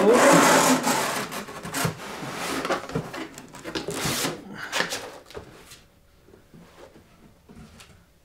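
Cardboard packaging scraping and rubbing against the inside of a cardboard shipping box as a packing layer is pulled out, loudest in the first second or so, with more scrapes around four seconds in, then fading to faint rustles.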